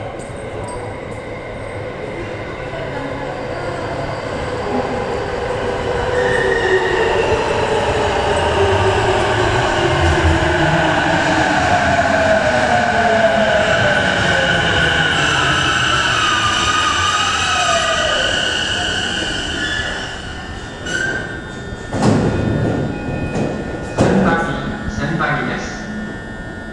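A JR East E233-2000 series electric train pulls into an underground station. Its rumble builds and its motor whine falls in pitch as it brakes, with a brake and wheel squeal. It slows to a stop, and sharp knocks follow near the end as the doors open.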